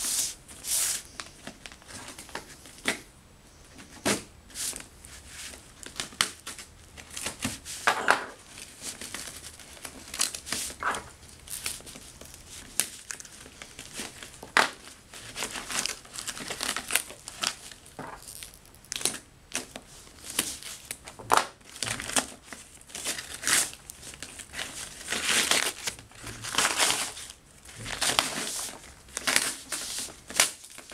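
Paper wrapping being crumpled and torn off a small cardboard parcel by hand, in irregular crinkling rustles and tears.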